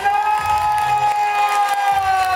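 A man's voice through a microphone and PA holding one long drawn-out shouted note, over a cheering crowd.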